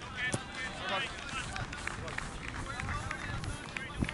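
Raised voices of players calling out across an outdoor cricket field, strongest in the first second and again near the end, with scattered short clicks between.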